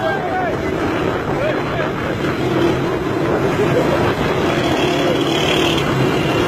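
Small motorcycle engine running steadily as the bike rides along, with wind on the microphone. A few short rising-and-falling voice calls are heard near the start.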